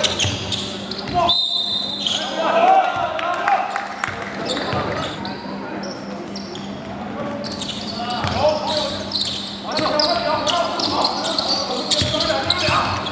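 Live game sound of youth basketball on a hardwood court in an echoing gym: a ball bouncing in repeated sharp thuds, with players' and onlookers' voices. A brief high-pitched tone sounds about a second and a half in.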